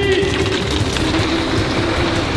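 Radio-controlled boat's motor running steadily under throttle with a continuous whine as the boat moves through the water.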